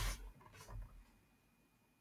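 Faint rubbing and handling noises near the microphone in the first second, then near silence.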